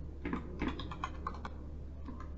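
Typing on a computer keyboard: a quick run of keystrokes over about the first second and a half, then it stops.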